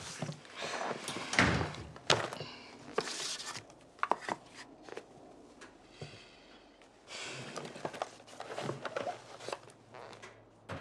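Scattered light knocks and rustling as things are handled in a small room, with a dull thunk about one and a half seconds in.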